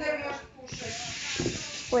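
A short vocal sound, then a steady hiss lasting a little over a second, before a voice comes in near the end.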